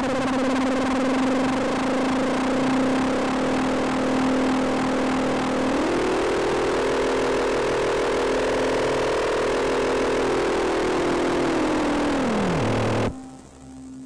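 Electronic noise drone from a box-built synthesizer: a steady buzzing tone with a warbling layer above it. About six seconds in, a second tone glides up and holds, then glides down near the end, and the sound cuts off abruptly.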